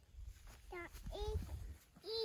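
A toddler's voice giving two short, high-pitched wordless calls about a second in, over a low rumble.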